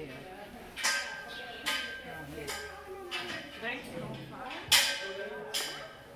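A series of sharp metallic clinks, about six, roughly one a second, each ringing briefly, the loudest a little before the end, with soft voices underneath.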